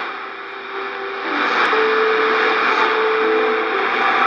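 Shortwave AM reception through an Icom IC-R8500 receiver's speaker: a hiss of static that swells about a second in, under a steady held tone that moves to a higher note about halfway through.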